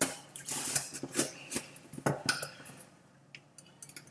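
A cardboard box being cut open with a small blade: a string of short scrapes and clicks, thinning out near the end.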